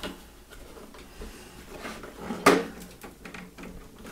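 Light knocks and rattles from a plastic-bodied RC crawler being handled and turned over on a workbench, with one sharper knock about two and a half seconds in.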